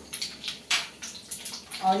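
Black mustard seeds and fenugreek seeds sizzling in hot mustard oil in a kadhai, with irregular crackles and pops as the seeds splutter during the tempering.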